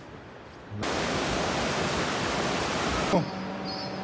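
A steady, even rushing hiss that starts abruptly about a second in and cuts off abruptly just after three seconds.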